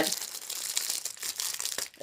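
Plastic packaging crinkling in irregular crackles as a small product is pulled out of it by hand.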